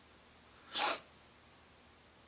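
A single short, sharp breath through the nose, about a second in and lasting about a quarter of a second.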